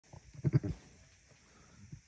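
A ewe's low, throaty rumble to her newborn lamb: several short low-pitched pulses in the first second, then quiet.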